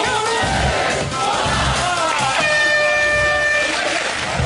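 Game-show music with a beat, then about two and a half seconds in a steady electronic buzzer sounds for over a second and cuts off: the time's-up signal ending the game.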